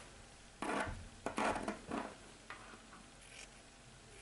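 Scissors snipping through fabric lining: a few short, crisp cuts spaced over the first two and a half seconds.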